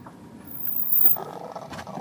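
A person's voice giving a drawn-out, rough 'uh' about half a second in, lasting under a second.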